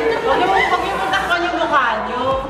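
Two women talking over each other, with some laughter.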